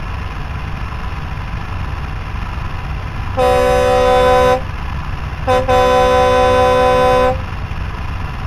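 Army truck engine idling with a steady low rumble while its horn sounds twice: a blast of about a second, then a brief toot running straight into a longer blast of nearly two seconds.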